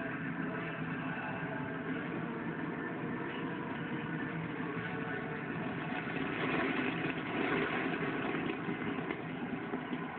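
Television broadcast sound played through the set's speaker and picked up by a phone: a steady, dense wash with some held tones underneath, a little louder from about six seconds in.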